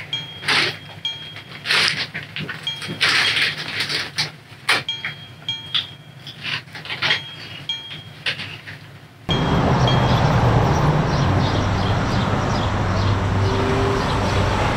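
Someone chewing a crunchy snack, with a string of short, sharp crunches. About nine seconds in the sound cuts abruptly to a steady, louder outdoor street ambience with a low traffic rumble.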